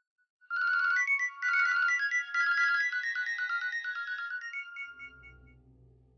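A phone ringtone: a quick melody of high electronic notes that starts about half a second in and fades out after about four seconds. A low, droning background music comes in near the end.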